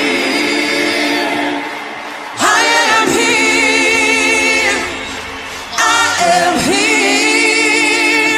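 Several voices singing together like a choir in long held notes with vibrato, in three phrases of about two seconds each, with little accompaniment beneath them.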